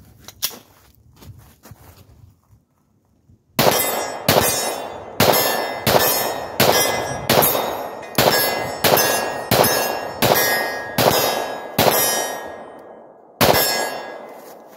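Glock 22 .40 S&W pistol fired two-handed in a steady string of about a dozen shots, roughly one every two-thirds of a second, with a longer pause before the last. Each shot is followed by the ring of a steel target being hit. The pistol cycles without a jam.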